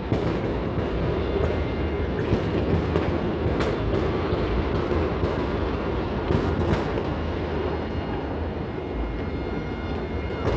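Many distant fireworks going off at once across the city, merging into a continuous rumble with a sharper crack now and then, one about three and a half seconds in and a couple more around six and a half seconds.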